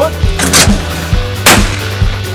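Two shots from a Sabatti Sporting Pro over-under shotgun, about a second apart, over rock music with a steady beat.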